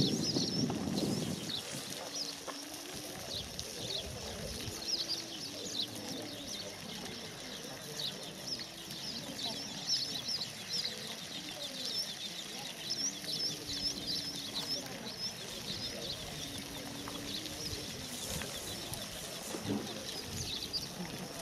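Small birds chirping in quick high twitters throughout, over a steady faint hiss, with a low call repeated every second or two. A louder low rumble comes in the first second or two.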